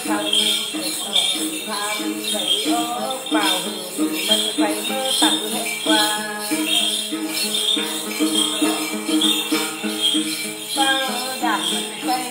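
Then ritual music: a đàn tính lute plucking a steady, repeating figure, a cluster of jingle bells (chùm xóc nhạc) shaken in time throughout, and a voice singing over them in phrases.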